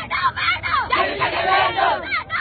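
A woman shouting protest slogans at full voice, with a crowd of voices shouting along around her.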